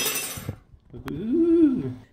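A brief clatter, then a man's voice humming a short note that rises and falls.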